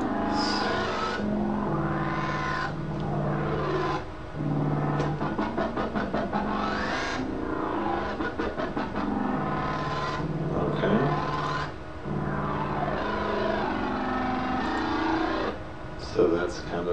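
Wobble bass from the Native Instruments Massive soft synth. Its filter cutoff is swept up and down by MIDI envelope clips over sustained low notes, in a phrase that repeats about every four seconds. From about five to seven seconds in, the sound is chopped into a fast stutter.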